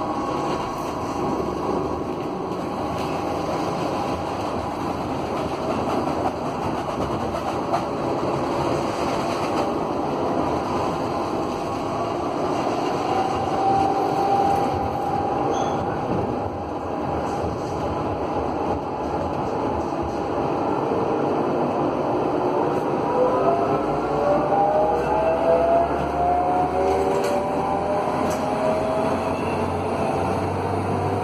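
Interior of a Bremen GT8N tram under way: rolling noise of wheels on rail, with the whine of the tram's original GTO traction inverter and traction motors. In the last third several whining tones rise together in pitch as the tram accelerates.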